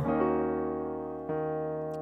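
Piano sound from a keyboard playing an E-flat minor seventh chord, E-flat doubled in the left hand and B-flat, D-flat, E-flat, G-flat in the right. The chord is struck, rings and fades, and is struck again a little over a second in with the sustain pedal down.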